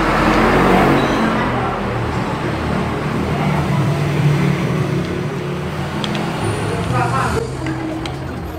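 Steady noise of passing road traffic with background voices mixed in, loudest about a second in and slowly easing after.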